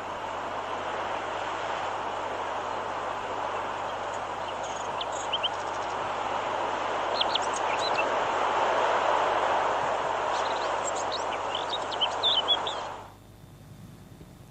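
A played-back recording of the sounds of the World War I armistice, the moment the guns ceased fire: a steady rushing noise with short high chirps from about five seconds in, cutting off abruptly near the end.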